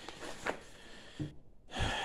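A paper page being turned and handled in a ring binder, faint and brief, followed by a short intake of breath.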